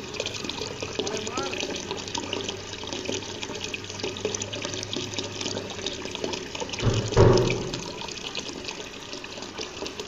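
Steady splashing of water pouring from a PVC pipe into a small garden fish pond, with one louder, deeper splash or thump about seven seconds in.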